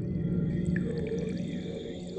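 Abstract electronic soundscape: a low, steady drone of held tones that swell and fade, joined right at the start by a layer of high, thin tones with brief glints.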